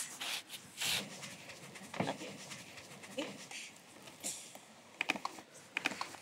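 A hand brush scrubbing a sheep's wool fleece: quiet rubbing, scratching strokes at an irregular pace, about half a dozen in all.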